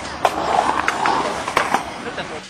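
Skateboard wheels rolling on the concrete of a skate bowl, a steady rolling noise broken by several sharp clacks.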